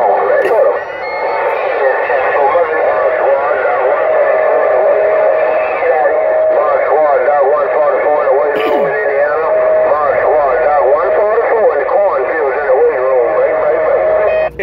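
Uniden Grant XL CB radio receiving on channel 6 (27.025 MHz): several stations talk over one another through its speaker in a loud jumble of voices. A steady whistle sits under the voices from about three seconds in.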